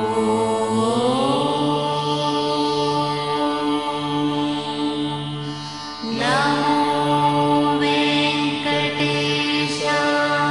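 Devotional chanting set to music: a voice sings long held notes over a steady drone, with a new phrase gliding in about six seconds in.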